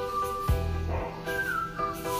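Background music: held chords with a high melody line that slides down in pitch past the middle, over a deep bass hit about half a second in.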